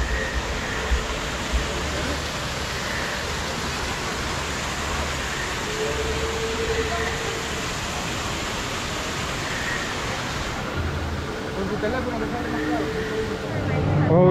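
Steady rush of falling water from artificial waterfalls, with faint voices. The rushing thins about ten seconds in.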